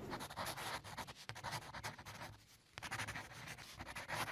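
Pen scratching over paper, a quick run of scratchy strokes in two stretches with a brief gap about two and a half seconds in.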